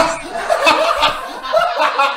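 Several men laughing together, a run of chuckles and snickers.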